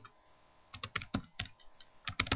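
Computer keyboard typing: a short burst of quick keystrokes starting a little under a second in, after a brief quiet.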